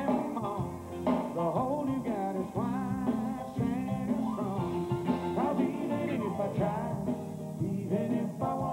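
A country band playing live: acoustic guitar and electric bass under a lead melody line with bending, sliding notes, in an instrumental passage of the song.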